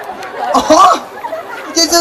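Speech: performers' voices through handheld stage microphones, in short phrases with brief pauses between.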